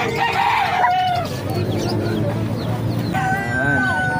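A rooster crowing, a first crow ending about a second in and a second crow starting about three seconds in, rising into a long held note that drops away at its end.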